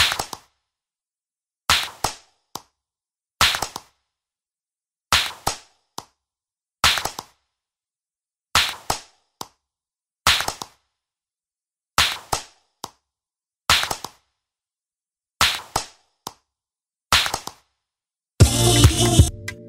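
A sharp, crack-like percussive hit about every 1.7 seconds, each trailed by two or three quicker, fading repeats like an echo, with dead silence between the hits.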